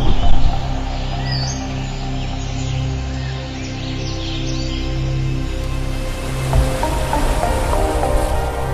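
Background music with a steady, repeating bass line, with small birds chirping over it through the first few seconds. A brief burst of noise right at the start.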